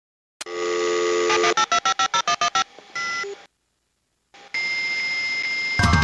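Telephone sounds opening the track: a click and a dial tone, then a quick run of about nine touch-tone key beeps, a short beep, a brief silence and a long steady tone. A hip-hop beat comes in near the end.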